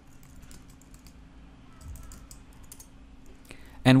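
Computer keyboard typing: scattered light key clicks in short runs of a few keystrokes, over a faint steady hum.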